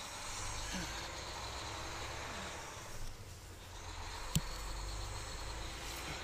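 Steady low engine and road rumble inside a Volvo 730 semi truck's cab as it moves slowly onto a road, with one sharp click about four and a half seconds in.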